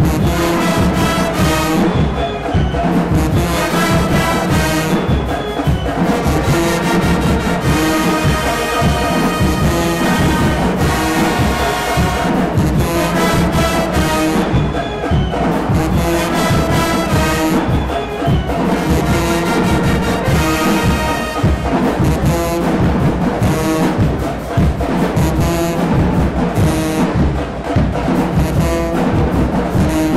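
A high school marching band playing a loud, brass-heavy stand tune: sousaphones, trumpets, trombones and clarinets together over a steady beat.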